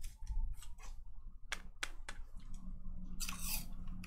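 Trading cards being handled on a tabletop: several light clicks and taps over the first two and a half seconds, then a short rustling swish a little past three seconds in.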